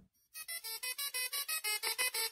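Musical Tesla coil playing a tune in short, buzzy notes, about seven a second, starting a moment in.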